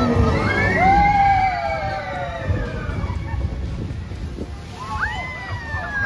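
A dark ride's musical soundtrack, a singer holding long notes that glide up and down, with water sloshing around the ride boat under a low rumble.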